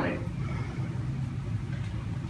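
A pause in a man's speech, filled by a steady low room hum.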